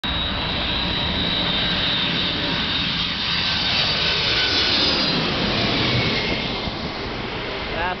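Boeing 747 on landing approach passing low overhead, its jet engines loud and steady with a high whine. The whine fades about five seconds in and the noise eases slightly as the plane goes past.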